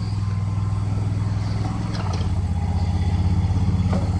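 Small tractor backhoe's engine running at a steady, rapid pulsing beat while the bucket digs. It grows a little louder in the second half as the machine works.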